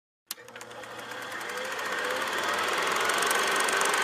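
Film projector sound effect: a click, then a rapid, even mechanical clatter that grows louder over the first couple of seconds.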